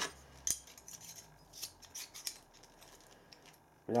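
A few light metallic clicks and scrapes as a steel parting-off blade and its tool holder are handled and fitted together by hand. The loudest click comes about half a second in, and several more follow between one and a half and two and a half seconds in.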